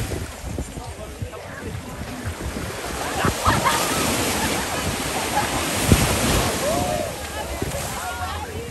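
Ocean surf washing against the shore, swelling louder a few seconds in, with faint voices of people at the water and some wind on the microphone.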